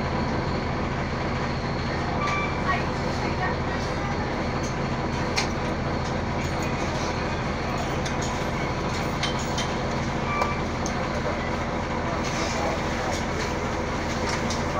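Steady interior drone of an Orion VII hybrid-electric city bus, a low even hum of the drivetrain and cabin with no rise or fall in level.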